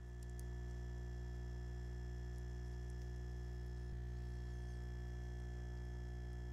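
Dental vibrator humming steadily while dental stone is poured into an alginate impression; the vibration works the stone into the tooth detail and drives out air bubbles.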